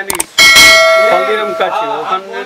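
Subscribe-button sound effect: a couple of quick mouse clicks, then a single bright bell ding about half a second in that rings on and fades over more than a second.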